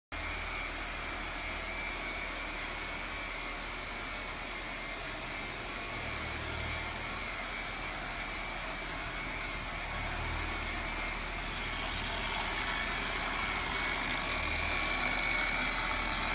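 Corded electric car polisher with a foam pad running steadily on the paintwork: a constant motor whine over a low hum, slowly growing louder toward the end.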